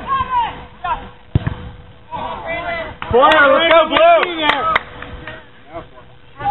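Players shouting during a soccer match, with a single sharp thud of the ball being kicked about a second and a half in. The shouting is loudest a little after the middle.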